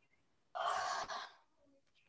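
A short, breathy sigh into a video-call microphone, starting about half a second in and lasting under a second.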